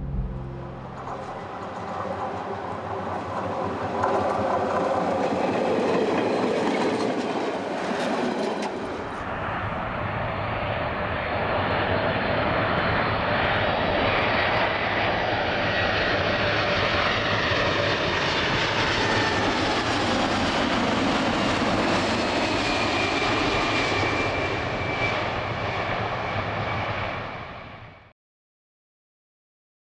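Jet airliner engines during takeoff and climb-out: a loud, steady roar with a faint whine sliding in pitch. The sound changes abruptly about nine seconds in and fades out at the very end.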